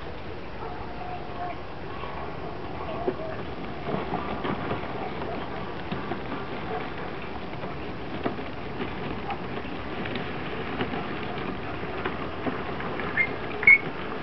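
1/8-scale RC model T-55 tank driving and turning over grass: a faint wavering whine from its drive, with the steady clicking and rattling of its tracks. Two louder short sounds come near the end.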